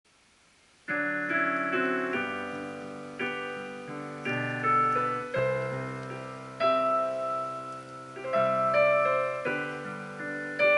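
Solo Yamaha piano playing the opening introduction of a hymn arrangement: it begins about a second in with slow chords, each struck and left to ring and fade.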